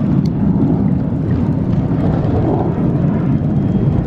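Fighter jet flying overhead, its engine noise a steady low roar.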